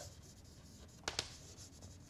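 Chalk writing on a blackboard: faint scratching, with two short sharp chalk ticks about a second in.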